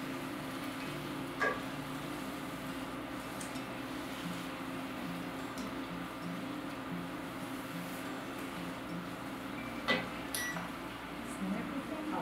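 Portable induction cooktop humming steadily, with a low buzz that pulses on and off about twice a second. Metal tongs clink against the enamelled cast-iron skillet once about a second and a half in, and twice close together near the end.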